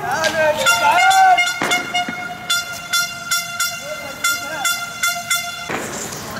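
A protesters' horn sounds a steady held tone over shouting voices. A sharp bang comes about a second and a half in and another near the end, and a run of quick sharp clicks, about three a second, fills the second half.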